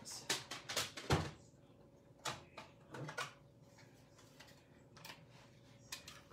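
Stamping tools and cardstock being handled on a craft table: a run of short clicks, taps and paper rustles, with one heavier knock about a second in and a few scattered taps after.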